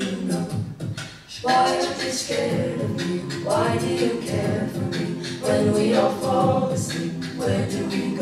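A cappella group singing close vocal chords behind a solo voice, with vocal percussion clicking out a beat. The sound drops briefly about a second in, then the full group comes back in strongly.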